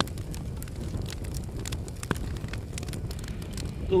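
Wood campfire crackling, with sharp pops scattered irregularly through it over a low steady rumble.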